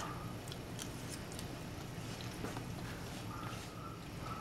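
Quiet eating sounds: a few faint clicks from a fork in a bowl of lasagna and a bite being chewed, over a low steady hum.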